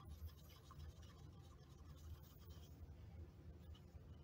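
Faint scraping and ticking of a stir stick against the inside of a paper cup as two-part epoxy resin and hardener are mixed, over a low steady hum.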